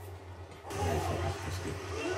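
A steady low hum, joined a little under a second in by the faint soundtrack of the anime episode starting to play.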